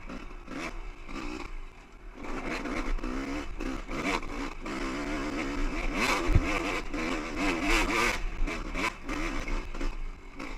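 Two-stroke dirt bike engine revving up and down as the throttle is worked, pulling uphill on a rocky trail. Short knocks and clatter of the bike over rocks run through it, with one hard knock about six seconds in.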